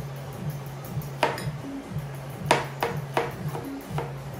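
Background music begins, with a steady low bass pattern repeating about twice a second and a few sharp percussive hits over it.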